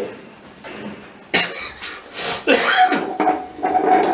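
A man coughing several times, starting suddenly about a second and a half in, then clearing his throat.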